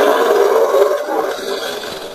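Outro logo sting: a loud rushing sound effect that slowly fades toward the end.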